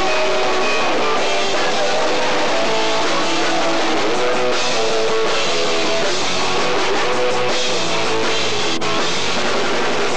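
Punk rock band playing, with electric guitar to the fore.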